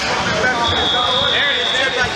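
A single high, steady electronic beep lasting just over a second, typical of a match timer, over the chatter of a busy tournament hall.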